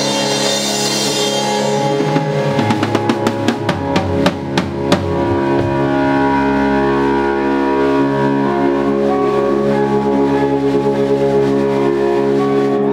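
Rock band playing live: held electric guitar and bass chords over a drum kit, with a quick run of sharp drum hits from about two to five seconds in, after which the full band carries on steadily.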